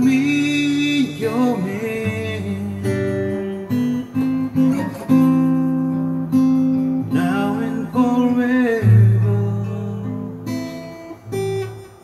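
Steel-string acoustic guitar playing chords. A man's voice holds long sung notes near the start and again about seven seconds in.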